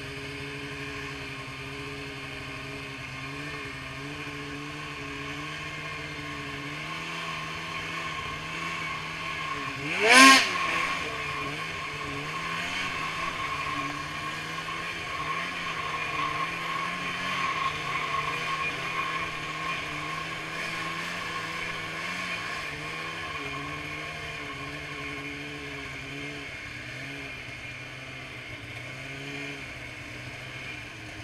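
Polaris Switchback Assault 144 snowmobile's two-stroke engine, fitted with a Bikeman Velocity trail can exhaust, running steadily with its pitch wavering slightly. A single loud, sharp bang about ten seconds in.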